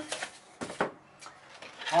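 A few short, light clicks of hands handling a plastic toy figure and its clear plastic packaging.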